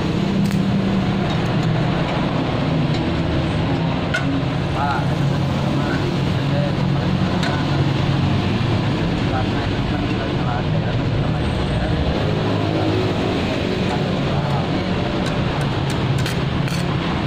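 A steady low mechanical drone like an engine running, unchanging throughout, with a couple of sharp clicks about half a second in.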